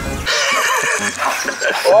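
A person laughing loudly over background music.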